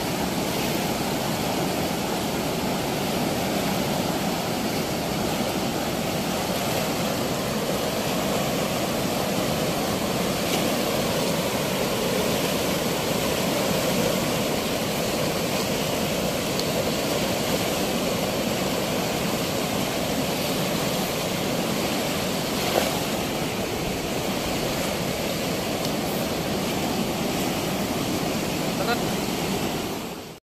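Steady rush of water pouring through a weir's sluice gate, with one short sharp knock about three-quarters of the way through.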